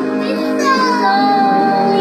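A child singing a Christian worship song into a handheld microphone over sustained backing music; the voice slides down onto a note and holds it.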